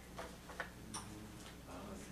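Quiet room tone with a low hum and a few faint, short clicks in the first second.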